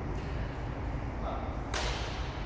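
A single sharp crack of a badminton racket hitting the shuttlecock about two seconds in, over a steady low background rumble.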